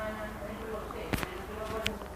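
Mechanical clockwork timer on an exercise bike being turned by hand: two sharp clicks from the dial, about a second in and near the end, over a faint steady drone from the running timer.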